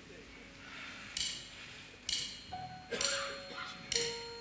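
Four light cymbal strikes, evenly spaced just under a second apart, each ringing briefly: a drummer counting in a song. A few soft piano notes sound under them.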